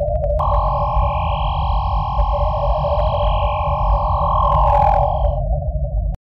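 Synthesized logo sting: a low rumbling drone under a steady hum. About half a second in, a bright sustained electronic chord joins and holds until near the end, with a brief whoosh before it stops.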